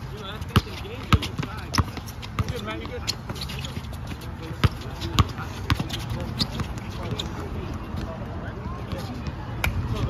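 Basketball bouncing on a painted hard court as a player dribbles: sharp bounces about every half second or so for the first few seconds, then more irregular, amid faint voices of other players.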